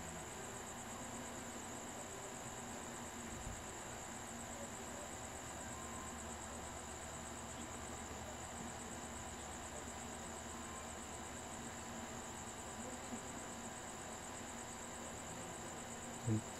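Crickets trilling steadily at a high pitch, a continuous insect chorus over faint background hiss.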